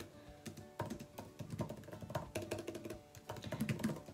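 Typing on a laptop keyboard: a quick, irregular run of key clicks.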